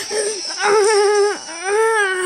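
A person's voice wailing in play-acted grief: long drawn-out cries, the last one sliding down in pitch.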